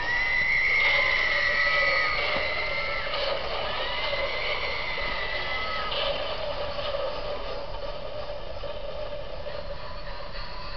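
Battery-powered Halloween toy on a store display playing a spooky sound effect: a long high wail for about three seconds, a second one soon after, with lower tones beneath, then quieter eerie sound to the end.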